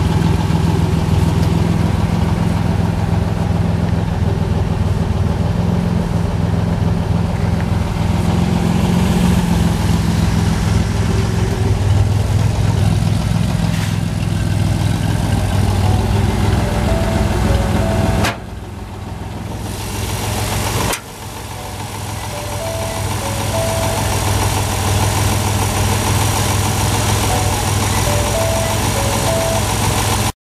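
1964 Chevrolet Corvair Spyder's air-cooled turbocharged flat-six idling steadily. The sound drops away sharply about eighteen seconds in and again about three seconds later, then builds back up.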